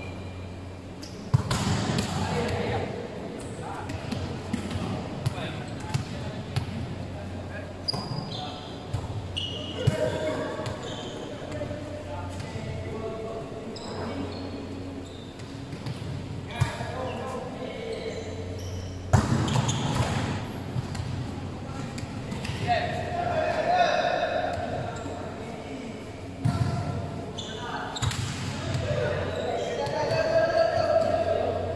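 A volleyball being struck and bouncing on a hard court: scattered sharp slaps, the loudest about a second in and again about two-thirds of the way through, with players calling out, echoing in a large hall.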